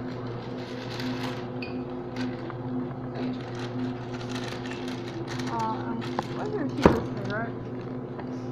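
A steady low electrical hum under faint background voices, with scattered handling clicks and one sharp, loud click about seven seconds in.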